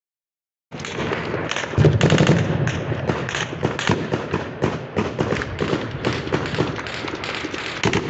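An exchange of gunfire: many rapid, overlapping shots in a dense, continuous run that starts under a second in, with a louder, deeper stretch about two seconds in.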